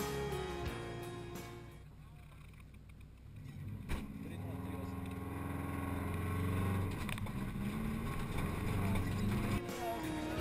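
A Subaru Legacy 2.0 Turbo's flat-four engine running, heard from inside the rally car's cabin, with a single knock about four seconds in. Background music fades out over the first two seconds before the engine comes through.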